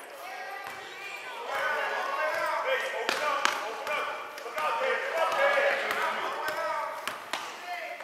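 Basketball bouncing on a gym floor, a few sharp bounces from about three seconds in, amid indistinct shouting and chatter of players and spectators in a large, echoing gymnasium.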